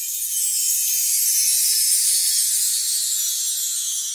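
Title-card sound effect: a high, glittering shimmer of chimes or small bells that swells in, peaks about halfway, and slowly fades.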